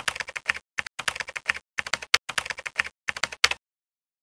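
Keyboard typing sound effect: rapid runs of clicks accompanying text being typed out on screen, stopping about three and a half seconds in.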